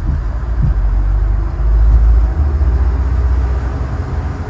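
Low, steady rumble of a motor yacht's Volvo Penta IPS engines and hull running underway, heard from the helm, swelling louder about a second and a half in.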